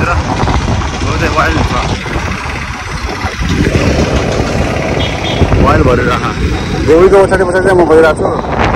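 Wind buffeting the microphone over engine and road noise while riding a motorbike in traffic, with short snatches of a man's voice about a second in and again near the end.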